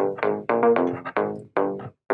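Roland SE-02 analog monophonic synthesizer playing a quick run of short notes at varying pitches. Each note starts bright and darkens as it dies away.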